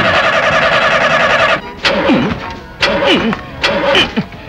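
A car engine turning over with a steady rhythmic churn that cuts off suddenly about a second and a half in, followed by short bits of men's voices.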